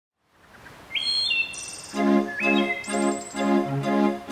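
Birds chirping in short high rising calls over a faint outdoor hiss. About two seconds in, the song's intro music starts with a chord pulsing a little over twice a second, and the chirps carry on over it.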